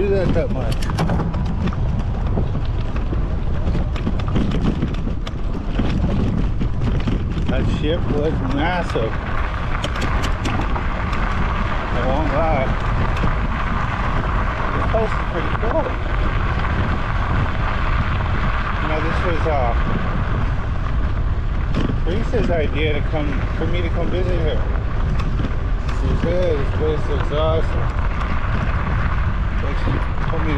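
Wind rushing over the microphone of a moving e-bike, a steady low rumble mixed with tyre noise on a dirt and gravel trail. Faint voices come and go from about eight seconds in.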